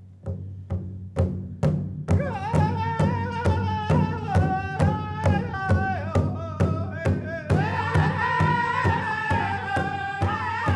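A First Nations drum group performing an honor song. A steady drumbeat of about two and a half strokes a second is joined about two seconds in by a high lead singing voice, and more voices join in higher about seven and a half seconds in.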